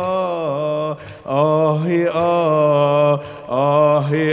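A man singing a long, wavering 'ya leil' vocal improvisation (an Egyptian mawwal). He holds drawn-out, ornamented notes in two phrases, with short breaths about a second in and again near the end.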